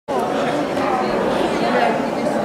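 Background chatter of many people talking at once in a large indoor arena hall, steady throughout.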